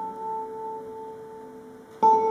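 A soft held chord on a pipe organ: a few pure, steady notes slowly fading away.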